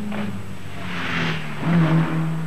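A Mercedes-Benz saloon driving fast over a crest on a dirt track: its engine note holds steady and drops slightly early on, with a rush of tyre and gravel noise about a second in as the car jumps the crest.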